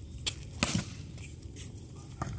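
A volleyball served overhand: one sharp hand-on-ball slap a little over half a second in, with a fainter knock just before it.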